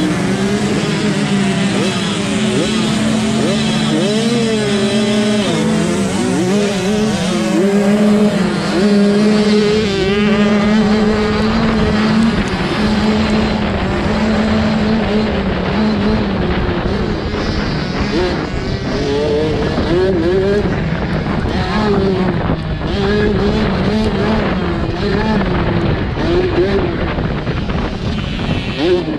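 Youth motocross dirt bike engines at close range. They hold revs at the starting gate, then rev hard up and down through the gears as the bikes race off the start in a pack.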